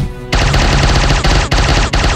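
Cartoon sound effect of rapid-fire quills being shot, a machine-gun-like rattle starting about a third of a second in, over background music.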